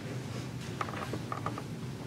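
A few short clicks and knocks, as of small objects being handled, over a steady low hum.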